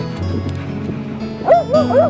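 A dog howling in a quick run of short rising-and-falling "woo" yowls starting near the end, over steady background music.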